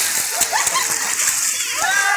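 Swimming-pool water splashing as people wade and play after a ball, among the voices of many people in the pool; a high voice rises near the end.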